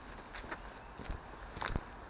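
Footsteps on a dirt path strewn with leaf litter, about three steps.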